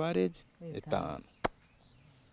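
A man's voice in short phrases, then a single sharp click about one and a half seconds in, with faint high bird chirps near the end.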